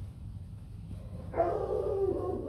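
Hmong bobtail puppy giving one drawn-out yelp, starting about one and a half seconds in and sinking slightly in pitch at the end.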